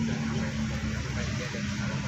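Steady background noise with a low hum.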